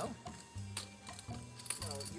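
Poker chips clicking lightly and irregularly as a player fidgets with his stack in his fingers, over faint background music.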